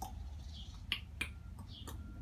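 A few sharp clicks made by a person, the strongest about a second, a second and a quarter and nearly two seconds in, over a steady low rumble.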